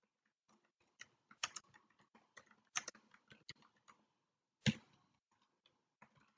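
Faint typing on a computer keyboard: an uneven run of quick keystrokes, with one louder stroke about three-quarters of the way through.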